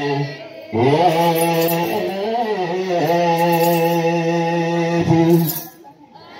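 Ethiopian Orthodox wereb chant: voices sing a phrase that glides up and settles into one long held note, with short breaks about half a second in and near the end.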